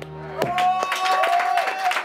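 Music playback stops about half a second in, then a small group in a studio room claps while one voice holds a long, high, cheering note over the clapping.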